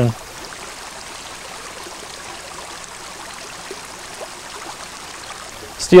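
A stream running steadily, an even rush of flowing water with no change throughout.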